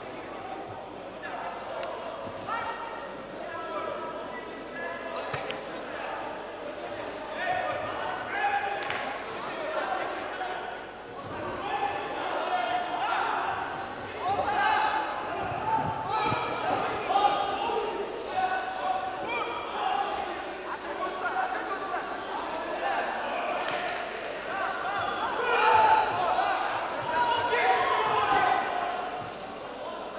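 Voices shouting and calling out around a kickboxing ring, growing louder in the second half, with occasional thuds from fighters' strikes.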